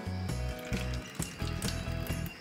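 Background music with a steady, quick ticking beat over a changing bass line.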